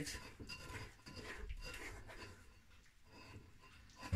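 Faint rubbing and scraping of a wooden spoon pressing jelly-like carrageen seaweed pulp through a stainless-steel mesh sieve, a few soft strokes in the first half, quieter after.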